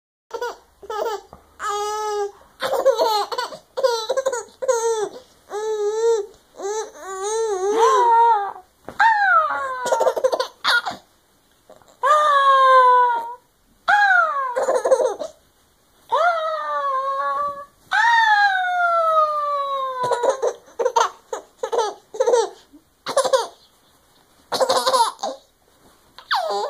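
A baby giggling: runs of short, high-pitched laughs, then in the middle several longer squealing laughs that each fall in pitch, then shorter bursts again.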